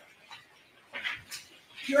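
Quiet courtroom room tone with a few faint rustles about a second in, then a woman's voice begins speaking just before the end.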